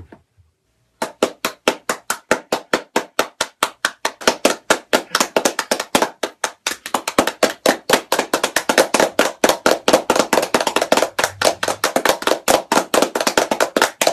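Hands clapping. It starts about a second in as separate sharp claps, a few per second, then thickens into faster, overlapping claps like several people clapping together.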